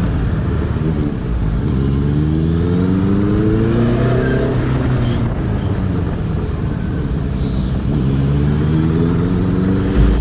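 Yamaha FZ25's single-cylinder engine heard from the rider's seat while riding, its pitch rising under acceleration for a few seconds, falling back about halfway through, then rising again near the end.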